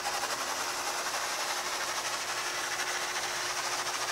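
Mesmergraph sand drawing machine running: its gear-driven turntable turns the magnets that drag steel balls through the sand. It gives a steady mechanical whir with a faint steady hum.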